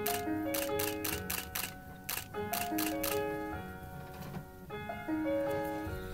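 A stills camera's shutter clicking repeatedly, several times a second in the first half and a few more near the end, over a song played back with held piano notes.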